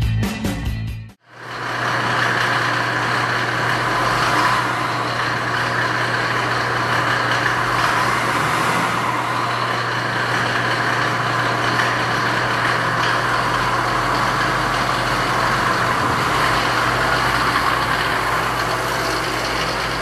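The 1991 Mercedes-Benz G-Wagen camper's engine idling steadily at an even pitch.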